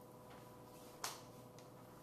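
Near silence: room tone with a faint steady hum, broken by a single sharp click about a second in.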